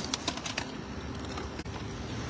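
A few short crinkling clicks of plastic trash bags and packaging being handled, mostly in the first half second, over steady background noise.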